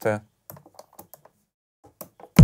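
Several faint, sparse clicks of buttons being pressed on a Native Instruments Maschine controller.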